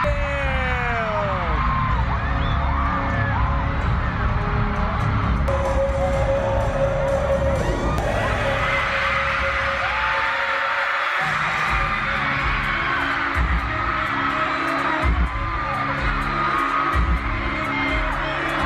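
Arena crowd of fans screaming and cheering over loud, deep bass music from the concert PA. The bass drops out for a moment about eleven seconds in, then comes back as a pulsing beat under the screams.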